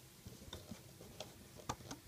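Faint, irregular clicks and ticks as rubber loom bands are stretched and slipped onto the plastic pegs of a Rainbow Loom, about five in two seconds, the sharpest near the end.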